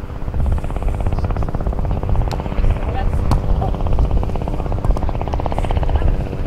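A helicopter flying nearby, its rotor making a rapid, even thudding that sets in just after the start and holds steady.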